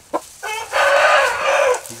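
Rooster crowing: a short pitched start about half a second in, running into one loud, harsh, raspy call lasting about a second.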